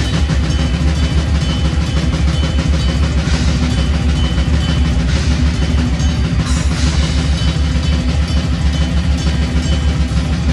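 Metal band playing live at full volume: electric guitar and bass guitar over fast, dense drumming with a heavy low end.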